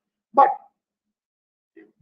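A man says one short, clipped word a third of a second in, then the line drops to dead silence until his speech resumes at the end.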